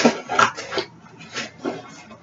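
Handling noise from a tumbler and its packaging: about five short knocks and rustling scrapes, the loudest at the start and about half a second in.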